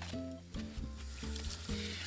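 Background music with held notes over a steady bass line, under an even hiss of water running from a kitchen tap as hands are rinsed.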